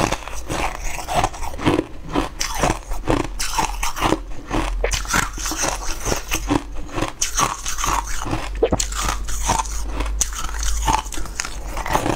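Biting and crunching through hard, brittle blue crystal-like chunks: a continuous run of crisp crunches, several a second, as each piece is bitten and chewed.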